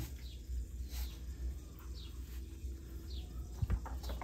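A bird chirping repeatedly, short falling high notes about once a second, over a low steady rumble, with a couple of sharp knocks a little before the end.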